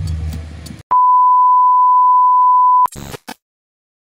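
Music cuts off, then a loud, steady electronic beep at one high pitch sounds for about two seconds, ending abruptly in a short crackle of noise and then dead silence.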